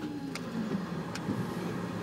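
Low, steady rumble of a car moving slowly, heard from inside the cabin, with two faint clicks.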